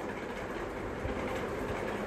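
Steady background noise: an even hiss with a low rumble underneath, with no distinct events.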